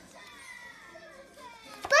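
Low-level room sound with faint voices, then near the end a short sharp click and the start of a young child's loud, excited shout as he calls out a dinosaur name.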